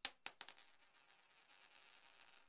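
Subscribe-button animation sound effect: high bright metallic ringing with a quick run of sharp clicks in the first half second. It fades out, then a fainter high shimmer returns in the second half.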